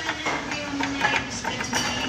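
Scattered light metallic clicks and knocks, irregular and close, over the steady background noise of a motorcycle workshop.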